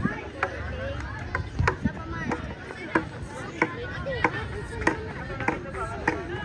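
Sharp knocks repeating steadily about every half second to second, like chopping, over scattered voices of a crowd.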